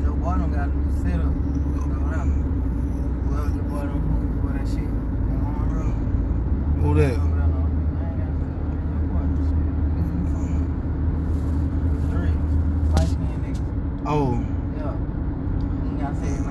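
Steady low rumble of a car driving, heard from inside the cabin, with muffled, indistinct voices now and then.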